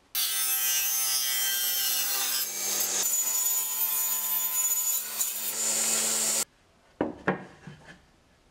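Table saw running and cutting through a wooden panel fed on a crosscut sled, a steady whine with hiss that starts abruptly just after the start and cuts off abruptly about six and a half seconds in. Then two sharp knocks.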